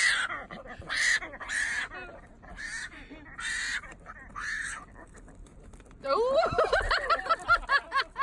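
A javelina (collared peccary) squealing in short, harsh calls, about one every second at first and then fainter, as a distress response to being held up by the scruff. Near the end a person laughs in quick bursts.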